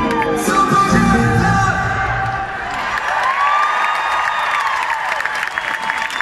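Live pop-rock band playing through the venue's sound system, heard from inside the crowd. The bass and drums drop away about two seconds in, leaving a long held note that swells and falls, with crowd cheering and whoops around it.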